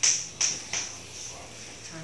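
Three sharp clicks or knocks in the first second, each fading quickly, over a steady high-pitched hiss of room noise.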